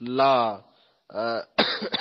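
A man's voice in short spoken bursts, with a sudden rough throat clearing near the end.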